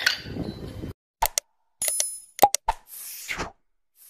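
A string of short, sharp clicks and pops with a brief bell-like ring about two seconds in, each separated by dead silence.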